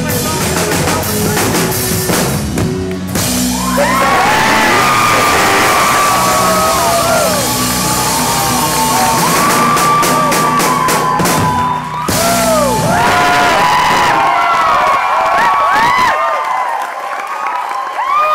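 Live rock band of electric guitars, bass and drums playing loudly, with many voices in the crowd whooping and yelling over it. The band's low end stops about two seconds before the end, leaving the crowd's whoops.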